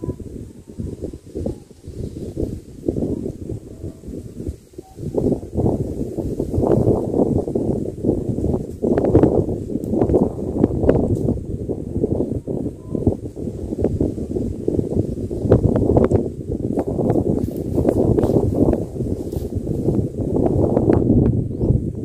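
Gusty wind buffeting the microphone: a rough, uneven low rumble that surges and drops, quieter at first and heavier from about five seconds in.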